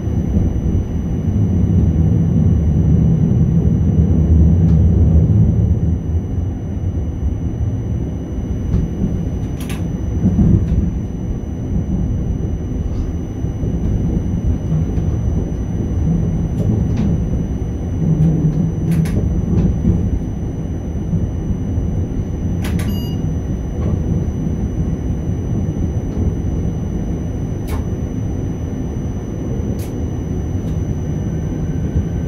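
Cab noise of a Škoda RegioPanter electric multiple unit rolling slowly through station trackwork: a low rumble from the running gear that eases after about six seconds, with a faint steady high whine and scattered single clicks from the wheels over the points.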